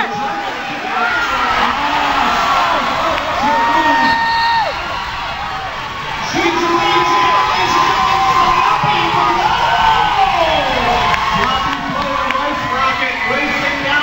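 Roller derby crowd cheering and shouting, many voices yelling at once, getting louder about six seconds in.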